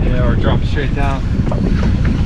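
Wind buffeting the microphone on an open fishing boat at sea, a steady low rumble, with a short voice cutting in twice.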